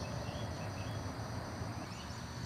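Quiet outdoor background: a steady, high-pitched insect drone of crickets, with a few faint bird-like chirps near the start.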